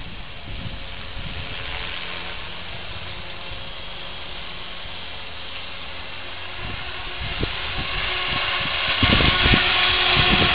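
Radio-controlled model helicopter flying at a distance: a steady drone of its motor and rotor blades, with low irregular thumps that grow louder over the last few seconds.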